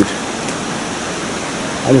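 Steady, even rush of flowing water, a continuous hiss with no breaks.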